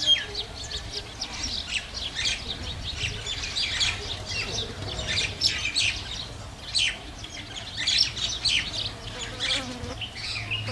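Small birds chirping and twittering continuously, a dense run of short high calls overlapping one another.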